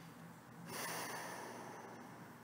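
A person breathing out slowly through the nose: a soft rush of air that starts about two-thirds of a second in, then gradually fades.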